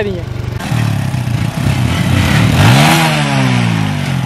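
TVS Apache motorcycle's single-cylinder engine being revved once: the pitch climbs to a peak about three seconds in and falls back toward idle.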